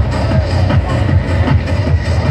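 Freetekno (hard, fast techno) playing loud on a party sound system, with a heavy, driving bass beat.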